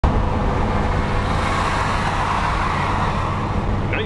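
Cabin noise of a car with a 318 Poly V8 at highway speed: a steady low engine drone under wind and tyre rush. The rush swells for a second or two in the middle as a 1959 Plymouth Sport Fury convertible with a 361 V8 pulls alongside.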